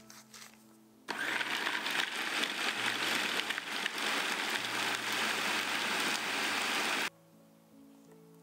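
Electric food processor running, chopping a bowl of sorrel leaves into pesto; it switches on about a second in and cuts off abruptly about six seconds later. Soft background music plays under it.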